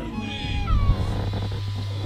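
A cat meowing: a short gliding call about half a second in, over a steady low hum.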